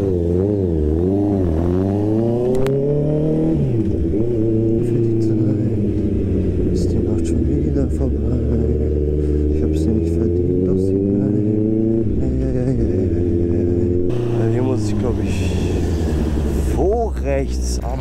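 Honda CBR650R motorcycle's inline-four engine under way, heard from the rider's position. The pitch climbs as the bike accelerates, then drops at gear changes about 4 and 12 seconds in before climbing slowly again.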